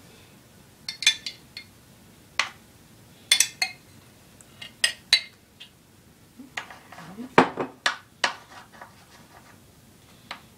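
A metal spoon clinking and scraping against a metal baking pan and a glass sauce jar while marinara is spread over pizza dough: irregular sharp clinks, about a dozen, the loudest a little past the middle.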